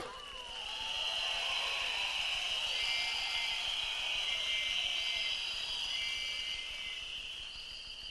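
A rally crowd blowing many whistles at once, a high-pitched steady blend with single whistle notes standing out, and faint voices underneath. It swells about a second in and fades towards the end.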